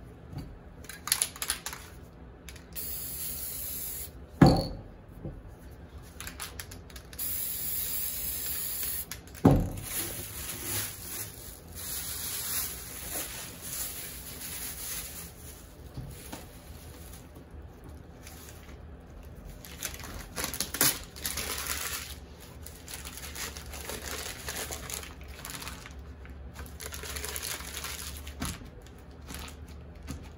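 Aerosol spray paint can hissing in short and longer bursts, the longest and loudest lasting about two seconds, a little before the middle. A couple of sharp knocks are heard between bursts.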